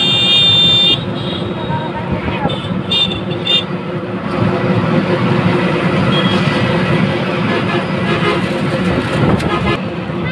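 Heavy road traffic: a vehicle horn sounds for about the first second, then a few short toots come around three seconds in, over a steady drone of idling and moving engines.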